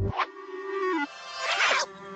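Cartoon sound effects over the score: a quick swish, a held musical note that steps down in pitch about a second in, then a louder whoosh, the loudest sound here.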